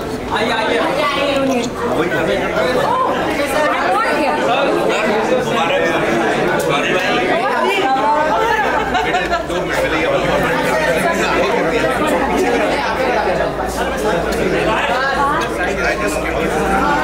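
Crowd chatter: many people talking at once, the voices overlapping and indistinct.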